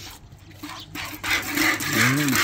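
Streams of milk squirting from a cow's teats into a plastic bucket during hand milking, a frothy hiss with a spurt at each squeeze. It grows louder about a second in.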